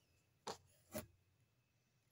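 Two small plastic clicks about half a second apart: Lego flame pieces being pressed onto the bottom of a minifigure jetpack.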